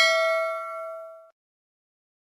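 Notification-bell sound effect from a subscribe-button animation: one bright ding with several pitches ringing together, fading away and gone about a second and a quarter in.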